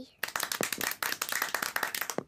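A small group clapping: a quick, uneven patter of hand claps that starts a moment in and carries on through.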